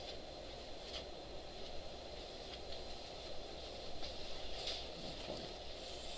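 Steady low room hum, the background noise of a lecture room's ventilation or projector, with a few faint clicks.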